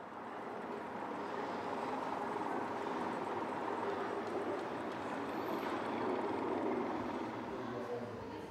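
Steady ambient background noise, a dense murmur that fades in at the start and eases off near the end.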